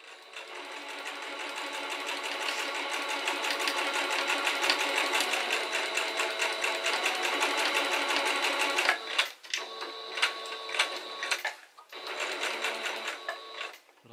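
Small electric sewing machine stitching fabric, a fast, even run of needle strokes over a thin steady motor whine. After about nine seconds it stops and starts in shorter runs, with brief pauses as the fabric is repositioned.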